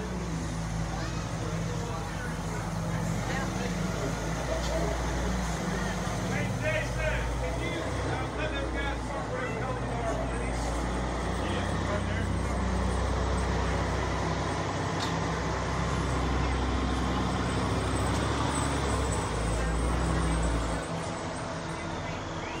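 Steady low rumble of motor vehicles, with indistinct voices over it.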